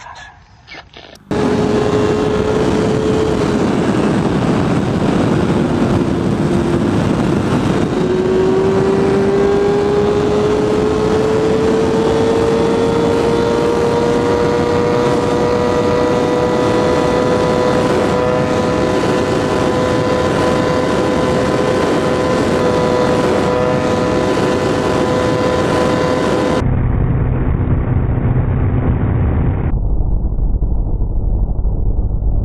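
Inline-four engine of a 2014 Kawasaki ZX-6R with an M4 Street Slayer carbon fiber exhaust, running flat out in fifth gear at high speed, with wind rush. It starts suddenly about a second in, dips briefly in pitch, then climbs slowly and steadily as the bike nears its top speed. Near the end the sound turns abruptly duller.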